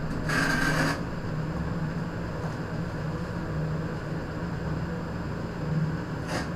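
A steady low hum, with one short scrape about half a second in from the tile-laying work on the wet mortar bed.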